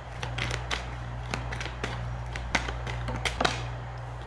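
A tarot deck being shuffled by hand, the cards giving irregular sharp clicks and flicks, over a steady low hum.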